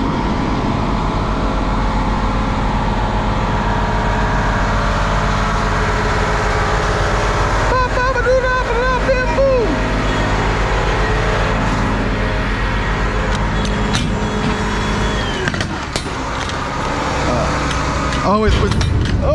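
Semi-truck diesel engine idling steadily, its low rumble dropping away a couple of seconds before the end.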